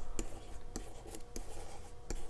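Pen writing on an interactive whiteboard: a string of irregular short taps and light scratches as figures are written by hand.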